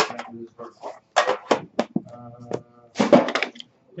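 Sharp clicks and knocks of a The Cup hockey card tin being opened and handled: its lid lifted off and the box set down, with a cluster of knocks near the end.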